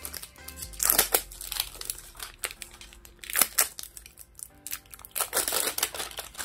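Thin plastic wrapping being peeled and crinkled off an L.O.L. Surprise toy ball in irregular crackly bursts, loudest about a second in, around the middle and near the end. Quiet background music plays underneath.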